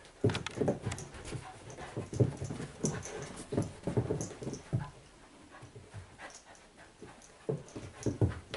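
A young labradoodle and a white puppy play-fighting, with a string of short, irregular dog vocal sounds. They come thick in the first five seconds and grow sparse afterwards.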